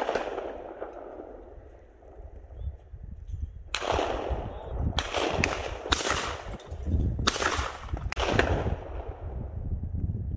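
Shotgun shots, about five in quick succession beginning almost four seconds in, each followed by a short rolling echo.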